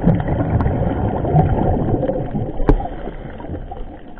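Scuba diver's exhaled regulator bubbles rumbling and burbling, heard muffled through an underwater camera housing, easing off near the end. A single sharp click about two and a half seconds in.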